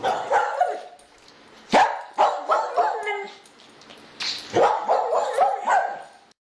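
Short animal calls: two separate ones in the first half, then a quicker run of them in the second half.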